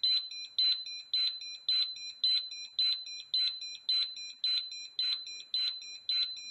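Gas leak detector sounding its alarm, a high-pitched electronic beep repeating evenly a little under twice a second. The detector has been set off by test gas during its operation test, showing that it detects gas.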